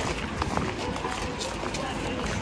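Footsteps of people walking or running along a path, a string of short irregular steps, with faint voices in the background.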